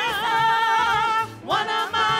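Female gospel singers singing into microphones: a long note held with wide vibrato, which breaks off about a second and a half in and slides up into the next phrase.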